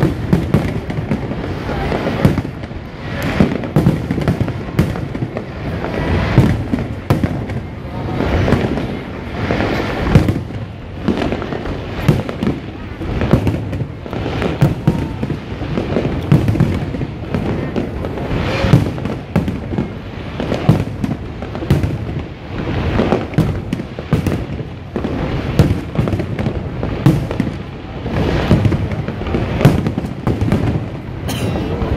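Aerial firework shells bursting in a continuous, irregular barrage of booms and crackles, several a second, with no pause.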